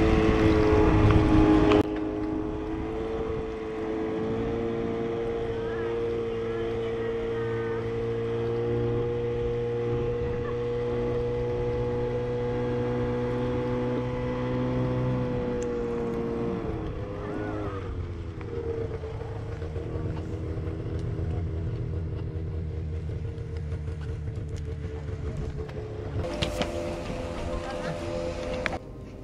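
Snowmobile engine running steadily while it tows a sit-skier uphill on a rope. About 17 seconds in it eases off with a wavering dip in pitch, then carries on at a lower, quieter note.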